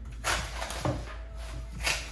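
Chef's knife cutting the green leaves and stalks off a head of cauliflower on a wooden cutting board: a few short cuts, spaced unevenly, over a low steady hum.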